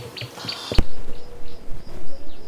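Birds chirping in a quick run of short repeated chirps, about three a second, over a low rumble. A little under a second in, the sound changes abruptly, as at an edit.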